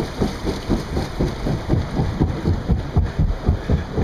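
Churning, rushing water alongside a river-rapids ride boat, with irregular low rumbling thumps throughout.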